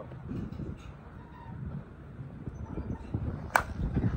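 An ASA TruDOMN8 slowpitch softball bat hitting a pitched softball: a single sharp crack about three and a half seconds in, over a steady low rumble.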